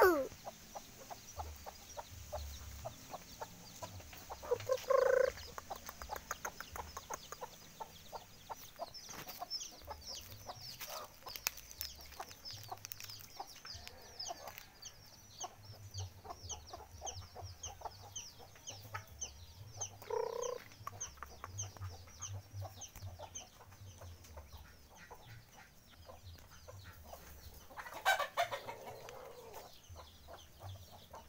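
Domestic chickens clucking, with short calls about 5 and 20 seconds in and a louder call near the end. Rapid, high-pitched chirping runs behind them for most of the time.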